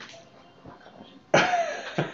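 A short, loud burst from a person's voice after about a second and a half of quiet, sounding like a cough or a throaty outburst.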